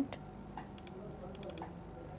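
A few faint, quick computer mouse clicks, bunched together about a second in.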